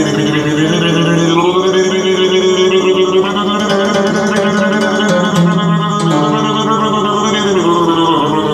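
Electronic organ chords from a Yamaha keyboard, held and shifting to new notes every second or so, with a wavering vibrato.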